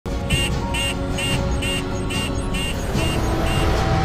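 A smoke alarm beeping rapidly, eight short high beeps at about two a second that stop shortly before the end, set off by a kitchen full of cooking smoke. Music and a low rumble run underneath.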